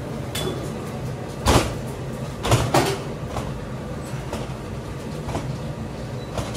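Large warm hard-candy log being rolled and pressed by gloved hands on a stainless steel bench: soft knocks and rubbing, loudest in three hits about a second and a half in and twice around two and a half seconds in. A steady low hum runs underneath.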